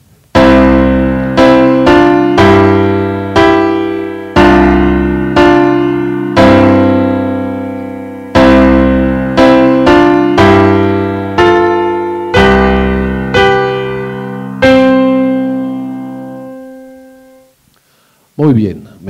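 Sampled piano of a music-learning app's virtual keyboard playing back a short recorded piece at a slow tempo: a bass line with chords and a melody on top, notes struck about once a second and each dying away, ending on a held chord that fades out.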